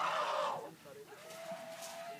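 An African elephant trumpeting: a short, harsh blare that fades within about half a second. Then, about a second later, comes a quieter, thin, steady high note.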